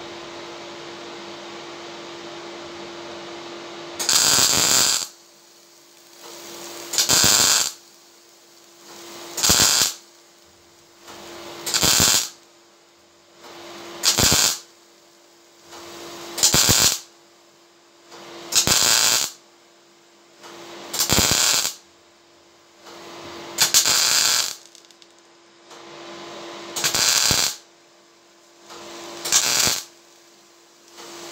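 MIG welder laying short stitch welds along a crack in a fuel tank: about eleven crackling bursts of arc, each about a second long and roughly two and a half seconds apart, starting about four seconds in. A steady hum runs beneath and between them.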